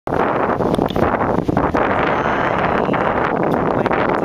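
Wind blowing across the camera's microphone: steady, loud wind noise, with a few brief clicks and dips in the first two seconds.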